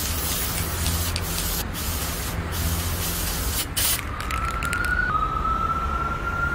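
Aerosol spray-paint can hissing in long bursts with brief breaks, over a low steady hum. About four seconds in, the hiss gives way after a quick run of clicks to a thin, slowly rising tone that drops once and rises again.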